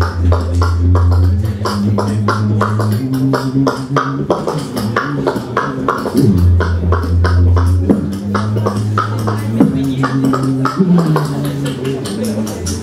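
Beatboxing into a handheld microphone: a low hummed bass line held in long notes that step up and down in pitch, with a fast, regular run of percussive mouth clicks and hits over it.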